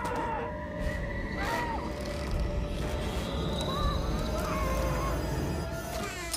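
Muffled, wavering whimpers and moans from a woman gagged with plastic wrap, over tense film score with a steady low rumble.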